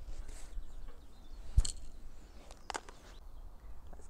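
Fishing tackle being handled: one sharp click about one and a half seconds in and two fainter clicks a second later, over a low wind rumble on the microphone.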